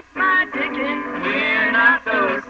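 A recorded song playing: a man singing a melody with music behind him.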